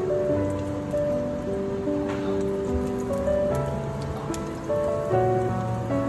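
Dồi sụn, Vietnamese sausages of ground pork and pork cartilage, sizzling in shallow oil in a nonstick frying pan with fine crackling spatter. Background music with held, slowly changing notes plays over it.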